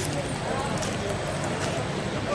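Faint voices of people talking in the background over steady outdoor noise, with a few light irregular clicks or taps.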